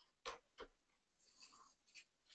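Near silence: room tone with two faint clicks in the first second and a soft rustle about a second and a half in.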